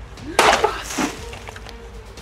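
A long blade strikes a liquid-filled plastic bottle: a sudden loud crack about half a second in, then a second, lower hit about a second in. Background music plays throughout.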